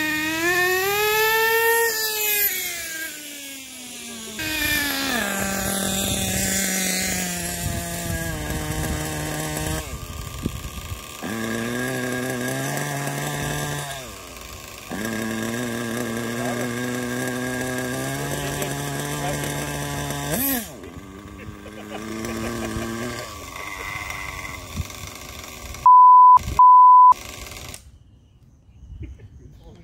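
1/8-scale nitro RC buggy engine revving: in the first few seconds its pitch rises and then falls away, and after that it runs at steady pitches that change in sudden steps. Two short, loud beeps come near the end.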